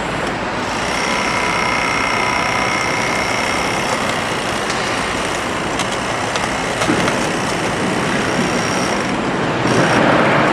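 Compact tracked demolition machine running steadily while its crusher attachment works on a concrete column. A high whine sits over the machine noise for the first few seconds, then fades.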